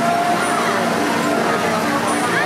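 Amusement-park ride ambience: a steady mechanical hum from the spinning ride mixed with crowd voices.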